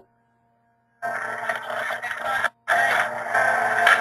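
A second of dead silence, then the soundtrack of an online video starts playing, coming through a webinar stream as a dense, distorted sound over a steady hum. It cuts out briefly about two and a half seconds in, then carries on.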